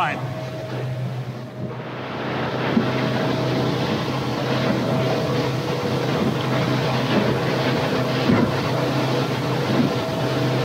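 Motorboat engine running steadily at speed, with water rushing and splashing against the hull and wind on the microphone; the rush of water grows louder about two seconds in.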